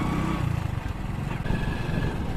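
Motorcycle engine running steadily while the bike is ridden along at a constant speed, heard from the rider's position.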